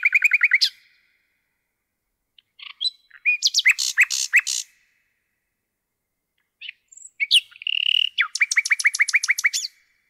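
Common nightingale singing: the end of one strophe, then two more strophes with pauses of about two seconds between them. Each strophe starts with a few varied whistles and ends in a fast run of repeated notes, about six a second. The last strophe holds a short steady whistle before its run.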